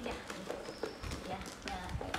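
Clear plastic wrapping crinkling and a plastic toy truck knocking lightly on a tiled floor as a macaque handles it, in a string of short clicks and rustles.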